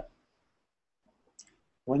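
A short pause in a man's speech: near silence broken by a single brief click about halfway through, before his voice resumes near the end.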